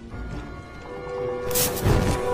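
Dramatic film score with held notes building in loudness, and a sudden loud whoosh-like sound effect about one and a half seconds in.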